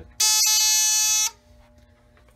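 A fire alarm panel's buzzer sounds once for about a second, a buzz that starts sharply and cuts off suddenly.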